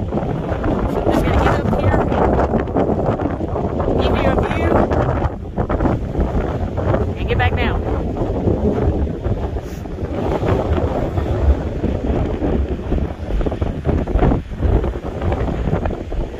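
Strong wind buffeting the microphone: a dense low rumble that rises and falls in gusts, with a few brief wavering pitched sounds about four and seven seconds in.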